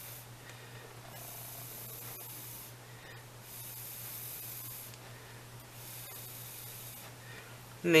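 A person blowing long breaths onto a film of nail polish floating on water, to dry it a little before shaping: three drawn-out hissing blows with short pauses between. A steady low hum runs underneath.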